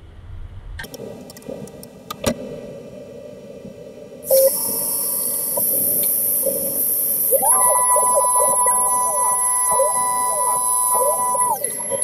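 Tormach PCNC 440 CNC mill cutting with a quarter-inch chamfer mill under flood coolant. A loud hiss comes in about four seconds in. About three seconds later a steady machine whine rises in and holds, with wavering tones beneath it as the tool works around the part. It stops just before the end.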